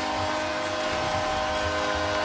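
Arena goal horn holding a steady chord over a cheering crowd, marking a home-team goal.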